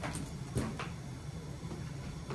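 Two or three short clicks and rattles from the dog's collar and leash being handled, the loudest about half a second in, over a steady low hum.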